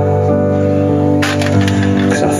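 Live rock band playing: sustained instrument chords over a steady low line, with a sudden loud hit a little past halfway.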